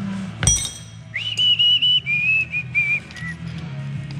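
A sharp metallic clink about half a second in, then a person whistling a short tune: a few held notes stepping down in pitch, ending just past the middle.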